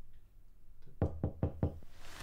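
Four quick, evenly spaced knocks on a door, starting about a second in.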